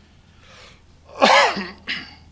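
A man coughing into a close lectern microphone: one loud cough about a second in, then a shorter second one near the end.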